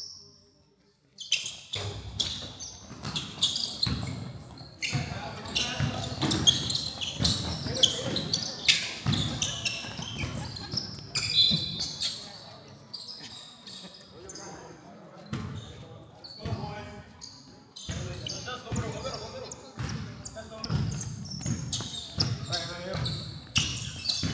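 Basketball game in an echoing gym: a ball bouncing on the hardwood floor amid players and spectators calling out. The sound starts about a second in after a near-silent moment.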